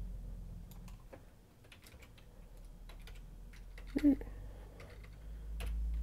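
Typing on a computer keyboard: scattered individual key clicks as an object name is typed. A short voice sound about four seconds in is the loudest moment.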